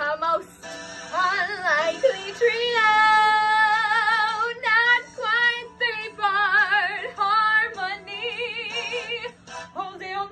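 A woman singing wordless vocal runs and long held notes with a wide vibrato.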